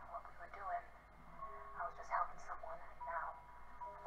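Dialogue from a TV episode playing through a speaker, quiet and thin-sounding, like a voice over a telephone.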